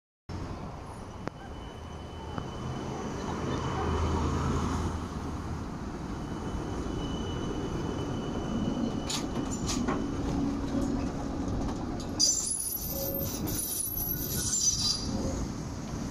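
V3A-93M articulated electric tram pulling away from a stop: a low traction-motor hum swells as it accelerates, then the steel wheels keep rolling on the rails. In the last few seconds a thin high squeal rises from the wheels.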